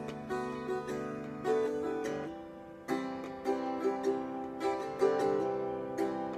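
Solo acoustic guitar playing chords in an instrumental passage, each chord ringing on after it is struck, with a fresh, louder chord about three seconds in.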